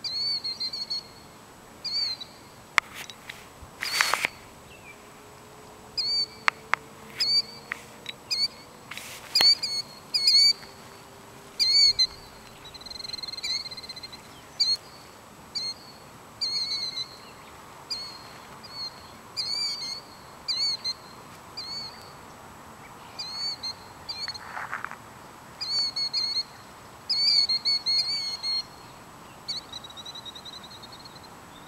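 A bird calling over and over: short, sharp, high calls, often in quick pairs or runs, about one to three a second. Two louder sharp knocks stand out about four and nine seconds in.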